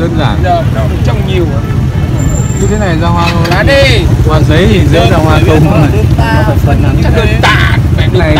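Several people talking at once over a steady low rumble of road traffic.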